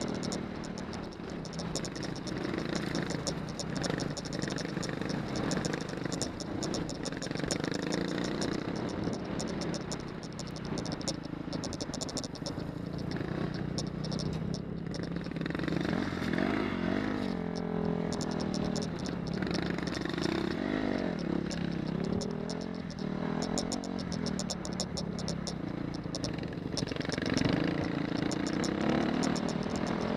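Off-road motorcycle engine running over a gravel track, heard from the rider's helmet, its pitch rising and falling with the throttle, most clearly in the middle. Stones and the bike clatter throughout.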